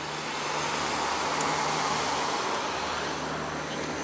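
A car passing by on the road: its tyre and engine noise swells to a peak about two seconds in and fades away, over a faint steady low hum.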